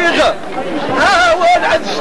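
Several voices singing an Amazigh inchaden chant, the melody wavering on long held notes.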